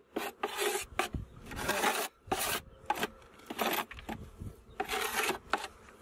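Irregular scraping and rubbing strokes from a polystyrene bee hive box being handled and worked apart.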